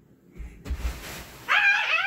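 A few dull thuds and a rustling rush of noise, then about halfway through a child's high-pitched scream lasting about a second.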